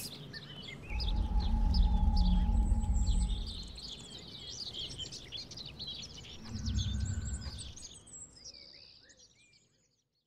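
Songbirds chirping and singing throughout, fading out near the end. A deep low rumble swells under them about a second in and lasts a couple of seconds, and a shorter one comes about seven seconds in.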